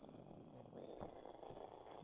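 Near silence: faint room noise with a soft click about a second in.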